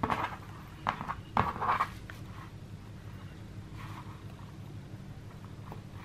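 Hands wrapping twine around a stuffed fabric cone: a few soft rustles and taps in the first two seconds, then only a faint steady hum.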